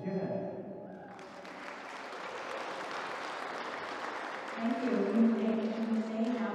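An audience clapping in a crowd, starting about a second in and going on steadily. Near the end a woman's voice begins over the clapping.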